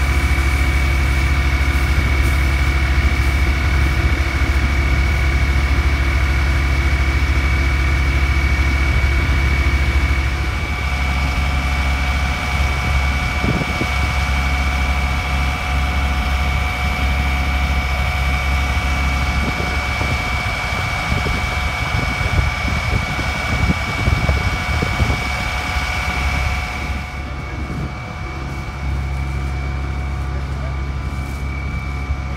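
MAN fire engine's diesel engine running steadily to drive its water pump while hoses are in use: a low drone with a steady high whine over it. It eases slightly about a third of the way in and again near the end.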